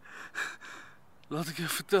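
A man's short gasping breaths, three quick ones, then he begins to speak in a strained voice.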